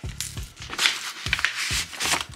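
Kraft-paper envelope being opened by hand: the sticker seal is peeled, the flap pulled open and sheets of sample labels slid out. The paper rustles and crinkles irregularly, with several sharp crackles.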